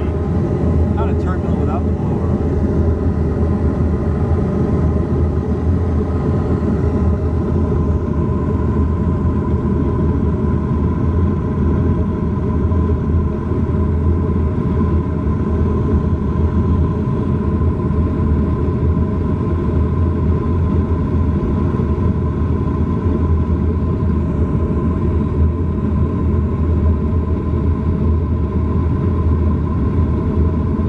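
Gas furnace running with a loud, steady rumble as its burners light and burn; a steady whine comes in about eight seconds in.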